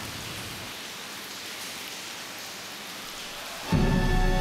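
A steady, even hiss of water in a flooded stone cistern, with no separate splashes standing out. Near the end a baroque orchestra comes in loudly.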